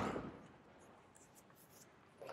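A spoken word fades out in the first half second, then near silence: room tone.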